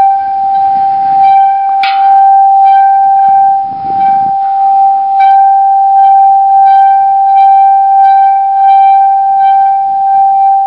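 Water gong, a brass spouting bowl filled with water, sung by rubbing its handles with wet palms: one steady, loud ringing tone with higher overtones above it, swelling and easing gently with the strokes.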